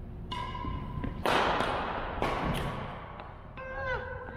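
Badminton play in a gym: racket strikes on a shuttlecock ring out in the hall, the loudest a little over a second in, mixed with squeaks of court shoes on the wooden floor, one sliding down in pitch near the end.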